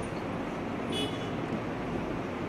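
Steady low rumbling background noise, with a brief high metallic clink about a second in.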